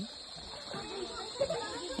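Faint voices of people in the background over a soft steady hiss.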